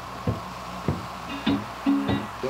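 Blues song in a gap between sung lines: a plucked guitar playing a few single notes.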